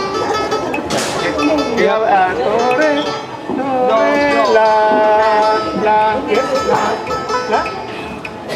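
Vietnamese two-string bowed fiddle playing single notes, some held steady and others sliding up and down in pitch.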